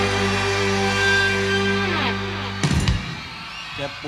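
A live rock band holds a sustained final chord on electric guitars and keyboards, then cuts it off with a few hard hits about two and a half seconds in, ending the song. Near the end a voice comes in.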